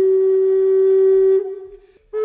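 Solo flute-like wind instrument music: one long held note that fades out about one and a half seconds in, leaving a short pause.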